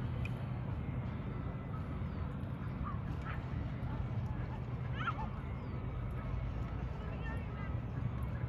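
Outdoor lakeside ambience: a steady low rumble, with a few brief faint calls about three and five seconds in and small high chirps.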